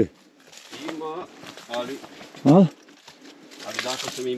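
Footsteps and rustling on a dry, rocky path through scrub, growing louder near the end, with a few short bursts of a person's voice, the loudest about two and a half seconds in.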